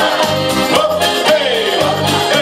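A song sung into microphones by male voices, over instrumental accompaniment with a steady beat.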